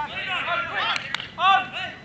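Voices of players and spectators calling out across a football ground, several overlapping, with one sharp click about a second in.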